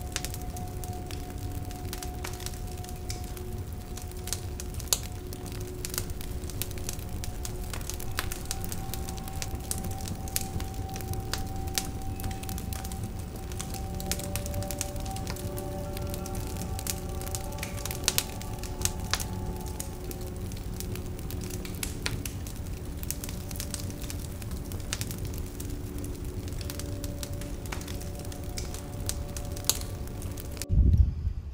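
Wood fire burning in a stainless-steel double-wall smokeless fire pit: a steady low rumble of flame with frequent sharp crackles and pops from the burning logs. Soft background music with long held notes plays throughout.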